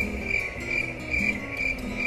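Cricket chirping, a high chirp repeating about twice a second, over soft background music.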